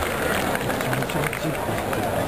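Stadium crowd of football supporters: many voices talking and calling at once, with people close to the microphone talking over the general din.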